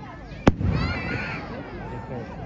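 An aerial firework shell bursting once with a sharp bang about half a second in.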